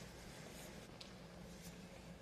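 Near silence: faint room tone with a low steady hum and a couple of faint small clicks.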